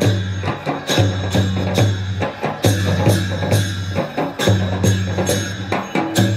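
Newar dhimay drums and large bhusya hand cymbals playing the rhythm for a Lakhe dance: deep booming drum strokes in a repeating pattern under sharp cymbal clashes that keep ringing.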